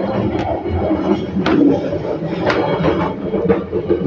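Interior running noise of the Argo Parahyangan train carriage: a steady rumble with several sharp knocks through it.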